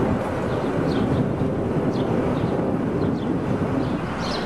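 Steady rumbling outdoor background noise, with short faint high chirps scattered through it.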